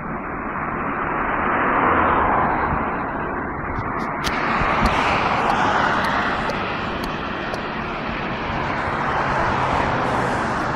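Road and wind noise of a moving car, a steady rush that swells and eases a few times, with a few sharp clicks about four seconds in.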